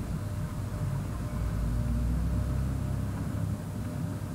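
Low rumble of a passing road vehicle, swelling about a second and a half in and easing off near the end.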